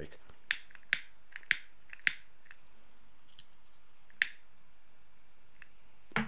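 A cigarette lighter clicked repeatedly to relight a cigarette that had gone out: four sharp clicks about half a second apart, a brief soft hiss, then one more click about two seconds later.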